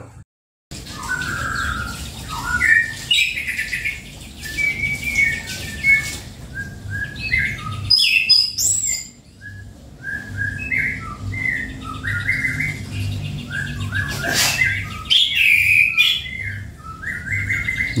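Caged orange-headed thrush (anis kembang) singing a varied song of short whistled and chirped phrases with quick trills, in full song soon after its molt. A low steady hum runs underneath.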